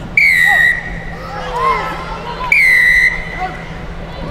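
Rugby referee's whistle blown twice, two blasts of about half a second each, about two seconds apart. Each blast dips slightly in pitch as it starts, then holds steady. It signals the referee calling play back.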